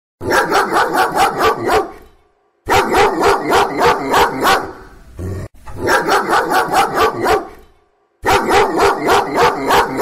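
An angry dog barking in four rapid volleys of six or seven barks each, about four barks a second, with short pauses between volleys.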